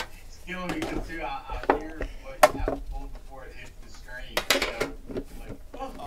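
Hard lidded Panini Immaculate card box being opened and handled: a few sharp clicks and knocks of the lid and box against the table, one about midway and a quick cluster near the end, under faint voices.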